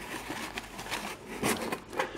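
Cardboard shipping-box flaps being folded back and packing paper rustling as a boxed coin is lifted out, with a few light knocks and a louder bout of handling about halfway through.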